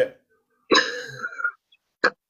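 A person's brief vocal noise, a single rough sound lasting under a second, a little after the start.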